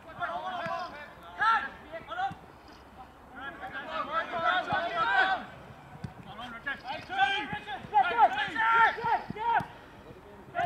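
Footballers shouting and calling to one another across the pitch during play, in several bursts of raised voices with short lulls between.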